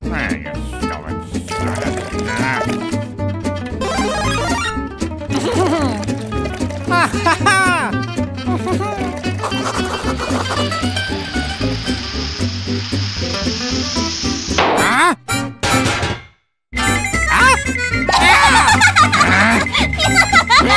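Cartoon soundtrack: bouncy background music with wordless character vocalizations and comic sound effects, including a hissing noise for several seconds in the middle. The sound cuts out briefly about three-quarters through, then loud vocalizing returns.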